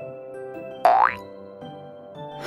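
Light children's background music, with a short cartoon sound effect about a second in: a quick sweep rising steeply in pitch.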